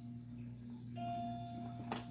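Electronic children's toy sounding a single held beeping note, starting about a second in, over a low steady hum.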